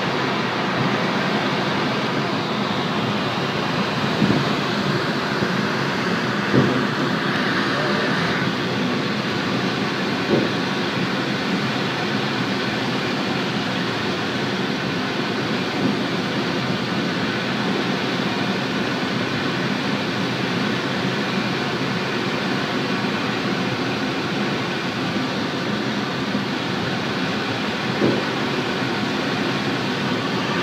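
Steady in-flight noise inside a small aircraft's canopied cockpit, a constant rush of air and engine noise, with a few brief knocks.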